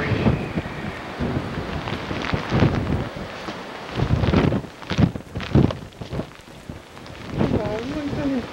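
Wind buffeting the camcorder microphone in irregular, rumbling gusts.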